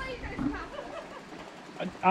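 Faint, distant voices of people talking, over quiet outdoor background noise.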